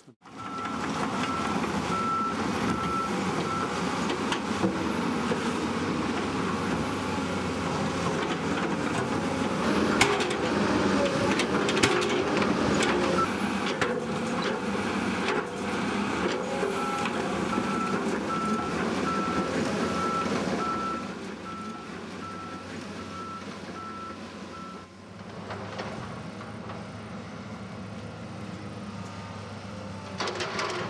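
Tracked hydraulic excavator working in a rocky creek bed: engine running under load with knocks and clanks of rock and metal, and a repeating beeping travel alarm at the start and again in the second half. The machine noise drops in the last few seconds.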